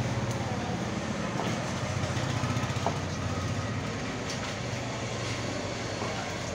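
Steady low mechanical rumble under even background noise, with a few faint short knocks as a large knife cuts king fish steaks on a wooden block.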